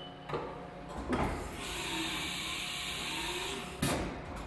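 Haas TM-1p automatic tool changer swapping the end mill out of the spindle for the probe in carousel pocket 10: a clunk about a second in, a steady hiss for about two seconds, and a sharp clunk near the end as the new tool is taken.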